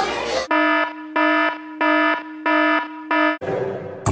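Electronic beeping, alarm-like and buzzy: five even beeps at about one and a half a second, starting about half a second in as the party noise cuts off.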